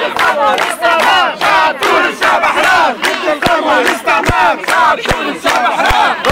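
A crowd of many people shouting at once, loud and continuous, with sharp hits now and then among the voices.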